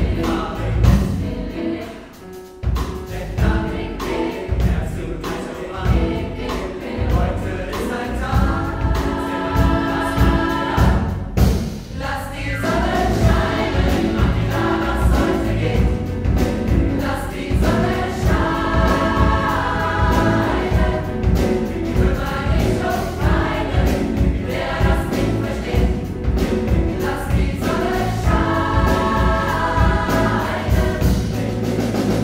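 Mixed pop choir singing a German song with piano, bass and drum kit accompaniment, with a steady beat. The sound drops briefly about two seconds in and again just before the twelve-second mark.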